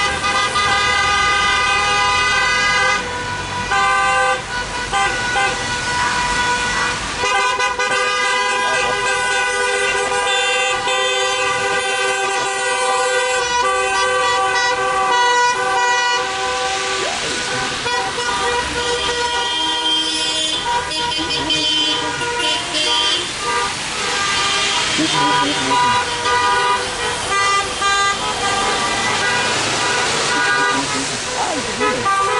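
Many car horns honking at once in long, overlapping blasts of different pitches, sounded in protest by a slow convoy of cars, over the low rumble of traffic.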